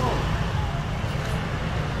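Busy market background: a steady low rumble with scattered voices, and a brief 'oh' from the auctioneer right at the start.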